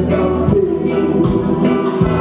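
Live roots reggae band playing, with a steady beat of about two drum strokes a second under held notes.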